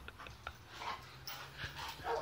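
Boxer dog panting faintly in short, soft breaths, with a couple of light clicks.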